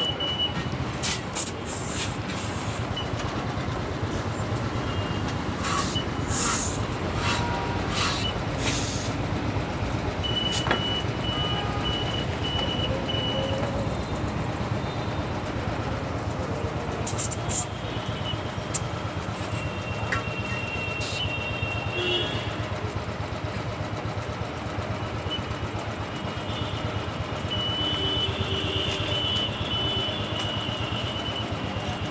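Steady rumble of idling vehicle engines and traffic, with scattered clicks and knocks and a few stretches of rapid high-pitched beeping.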